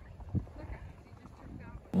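Quiet outdoor background with a steady low rumble, a single soft knock about a third of a second in, and a faint distant voice near the end.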